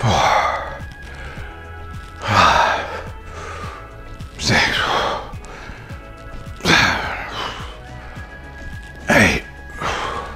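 Background music under a man's short strained vocal bursts, five of them about two seconds apart, each falling in pitch: rep counts and hard breaths during dumbbell lateral raises.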